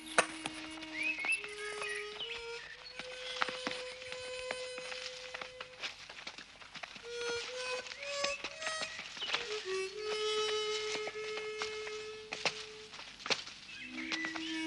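Soundtrack music: a slow harmonica melody of long held notes stepping up and down, with a few bird chirps about a second in.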